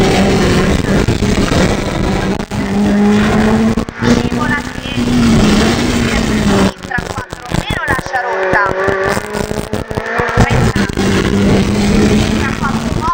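Renault Clio Williams rally car's four-cylinder engine revving hard from inside the cabin, rising and falling in pitch through gear changes, with sharp lifts of the throttle between pulls.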